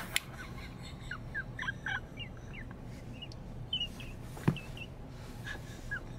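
Faint, scattered short chirps, animal-like, some rising and some falling, with one sharp click about four and a half seconds in.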